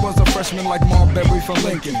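1990s hip hop track: a beat with a heavy kick drum hitting about twice a second, with rapping coming in right at the end.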